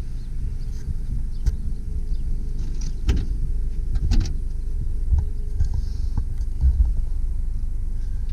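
A few sharp clicks and knocks as the trunk lid of a 1997 Honda del Sol is released and lifted open, over a steady low rumble.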